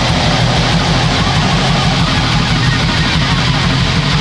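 Bestial black metal: heavily distorted electric guitar and bass over rapid, evenly pulsing drums, dense and loud.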